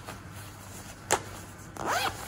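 Zipper on a nylon down pullover's chest pocket being worked by hand: one short, sharp zip about a second in, with light fabric handling around it.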